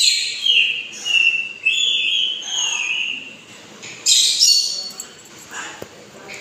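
Caged pet bird whistling: a run of short whistled notes that slide up and down, then a louder, harsher call about four seconds in.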